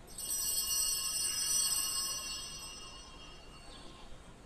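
A small bell struck once, ringing with several high tones that fade away over about three seconds.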